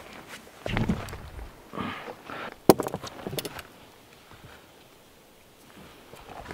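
Footsteps on grassy ground and handling noises, with one sharp click a little under three seconds in and a few lighter clicks just after.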